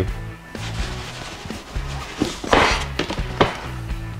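Background music with a steady bass line. About two and a half seconds in, a short scraping rush as the lid of a rigid cardboard box is slid off, followed by a light knock.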